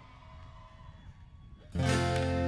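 Amplified acoustic guitar: after a faint, quiet stretch, a strummed chord comes in suddenly near the end and rings on as a song begins.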